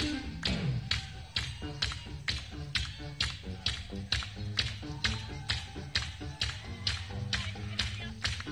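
Live funk band playing a groove: drums keep a steady beat of about two strokes a second under a bass line and short, clipped chord stabs. A note slides downward about half a second in.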